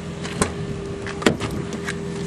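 A van's front door being unlatched and pulled open: two sharp clicks, about half a second and just over a second in, over a steady hum.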